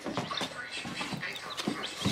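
Black sex link and Ameraucana baby chicks peeping inside a cardboard carrier box, a scatter of short, high peeps.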